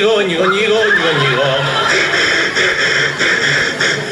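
A man's voice from a song recording drawn out in a wavering, whinny-like wail for about two seconds, between lines of a bawdy song's refrain. It then turns into a rougher, noisier sound.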